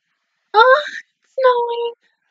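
A woman's voice making two drawn-out, high-pitched wordless cries, the first sliding up in pitch, the second held on one note.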